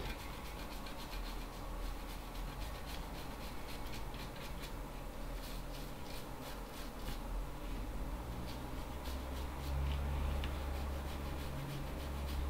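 Toothbrush scrubbing isopropanol over the freshly soldered pins of a QFP chip on a circuit board, a quick run of short brushing strokes. The board is being cleaned after soldering.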